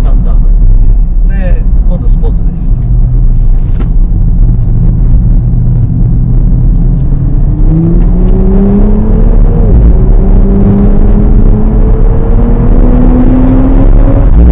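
Nissan Fairlady Z NISMO's twin-turbo V6 accelerating on track over a steady low rumble. Its note climbs in pitch from about halfway in, dips once at an upshift, then climbs again.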